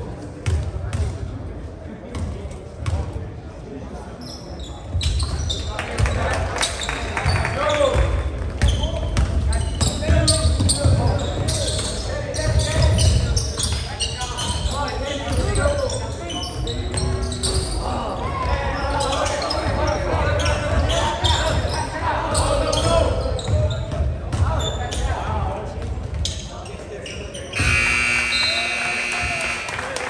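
Basketball bouncing on a hardwood gym court amid players' and spectators' voices in a large, echoing gym, with a buzzer sounding steadily for about two seconds near the end.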